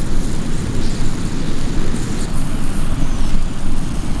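Wind buffeting the microphone: a loud, steady rumble with a hiss over it.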